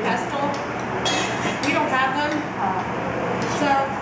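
Metal spoon clinking and scraping against a small glass bowl as saffron is worked into sugar, with people talking in the background.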